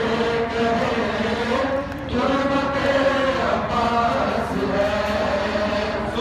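Men's voices chanting a noha, a Shia lament, in long held, wavering notes, with a brief pause between lines about two seconds in.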